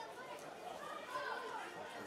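Faint, scattered shouts and calls of footballers on the pitch over quiet open-air stadium ambience.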